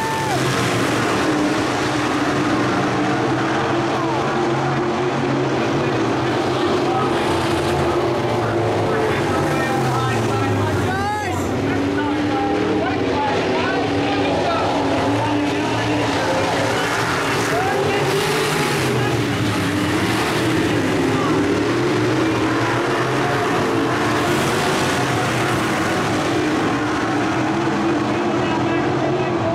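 Engines of several dirt-track modified race cars running at speed, their pitch rising and falling as they go through the turns, with one car passing close about eleven seconds in.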